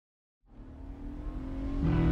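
Car engine fading in and growing steadily louder as the car approaches, a low rumble with a steady hum.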